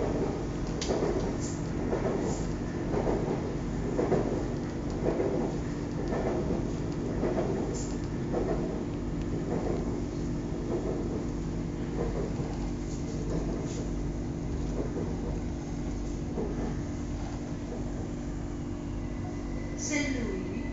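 Elevated BTS Skytrain electric train heard from inside the car while running: a steady low electric hum with a pulsing rumble from the wheels and track, stronger in the first half. A thin high whine comes in near the end.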